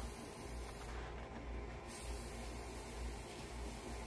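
Faint, steady airy hiss of breath blown through a small telescoping metal pocket fire bellows tube, which blows really easy.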